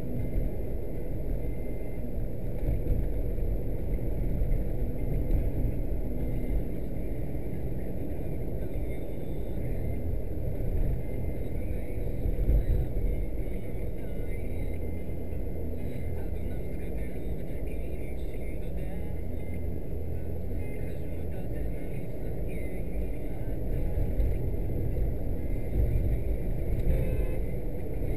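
A car driving on a paved road, heard from inside its cabin: a steady low rumble of road and engine noise with small swells in level.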